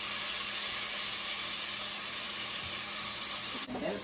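Chopped vegetables sizzling in hot oil in a stainless steel pot on a gas burner: a steady hiss that cuts off abruptly near the end.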